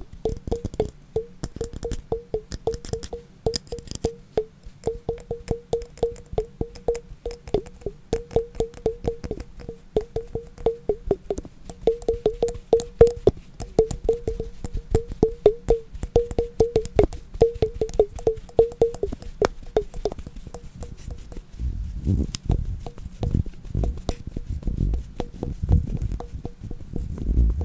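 Rapid, uneven tapping on a glass container, several taps a second, each tap ringing briefly at the same pitch. For about the last five seconds the ringing taps stop and duller, lower taps take over.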